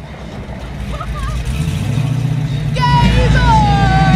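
A car drawing closer, its engine growing louder, then about three seconds in a long car-horn toot that slides slightly down in pitch.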